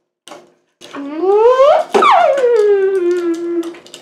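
A child's voice making a wordless sound effect: one long wail that rises in pitch and then falls away, with a few light clicks of a plastic toy figure being handled just before it.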